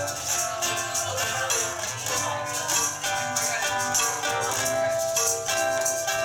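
Live acoustic band playing a song's intro: maracas shaking a steady rhythm over acoustic guitar and a melody line.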